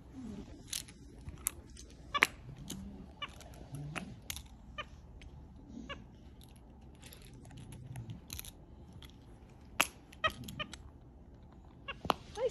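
Silicone pop-it fidget toys being pressed and pulled by a capuchin monkey, making sharp, irregular pops and clicks, with a few soft animal sounds between them.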